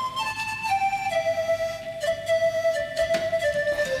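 Background music: a slow melody of a few long held notes, stepping downward in pitch.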